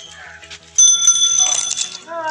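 A small metal bell rings sharply, starting a little before the middle and ringing on with high, steady tones for about a second, loud over a faint background music beat.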